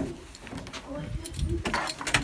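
A metal key clicking and rattling in a door lock as it is worked free, with a sharp click at the start and a few lighter clicks near the end, under faint speech.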